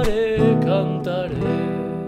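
Nylon-string classical guitar strumming the closing zamba chords, ending on E minor, under a held sung note that wavers in pitch. The voice stops about one and a half seconds in and the last chord is left ringing and dying away.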